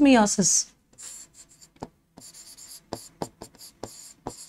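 Writing on a board: a run of short scratchy strokes and light taps, starting after the tail of a spoken word about half a second in.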